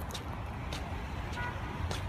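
Low, steady traffic and car-engine rumble, with a few faint clicks and a brief high tone about one and a half seconds in.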